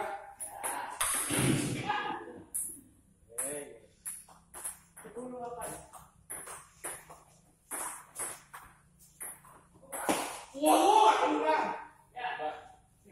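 Table tennis ball clicking sharply off the rackets and table in a rally, followed by scattered single clicks through the rest. People's voices come in between, loudest in a burst near the end.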